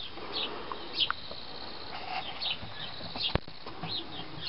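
Bird chirping: short, high chirps repeated every half second or so. A single sharp click comes near the end.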